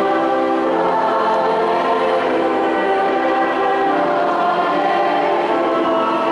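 Church choir singing, many voices together on long held notes.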